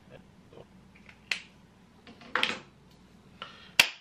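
Dry-erase marker writing on a whiteboard: a few short, scratchy strokes and faint taps, then a single sharp snap near the end.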